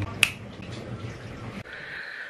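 A single sharp finger snap near the start, followed by quiet room tone.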